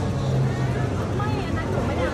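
Indistinct background voices over a steady low hum, with no distinct nearby sound standing out.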